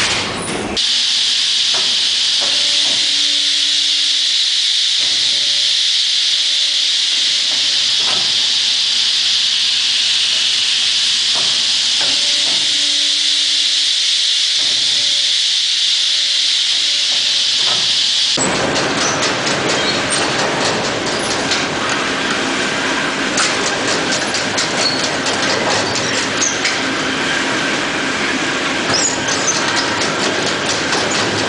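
Sawmill machinery running. For about the first half there is a steady high hiss with a low tone that comes and goes and a few knocks. Then it changes suddenly to dense rattling and clattering of conveyors and rollers.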